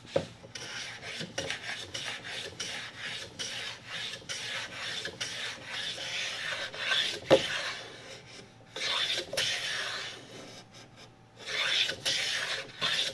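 Small metal hand plane shaving the edge of a wooden strip in repeated quick strokes, with a sharp knock about seven seconds in and a brief pause near the end.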